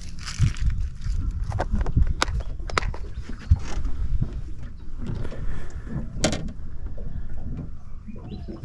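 Fishing tackle being handled: a few sharp plastic clicks as a lure is taken from a tackle box and tied onto the line, over a steady low rumble.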